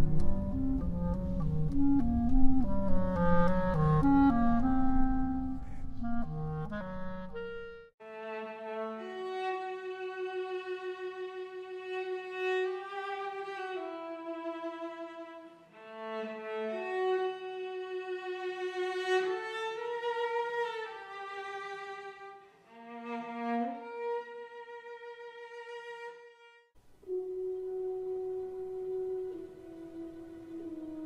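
Short recordings of single orchestral instruments, one after another: a quick run of low woodwind notes, then from about eight seconds in slower, held bowed-string notes. A brief pause follows, and a new sustained line starts near the end.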